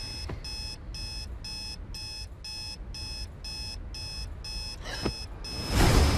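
Electronic alarm beeping, short high beeps about two a second, then stopping. Just before the end a loud, low sound comes in suddenly.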